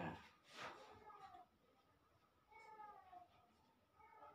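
A brief noise about half a second in, then a cat meowing faintly twice, each meow falling in pitch.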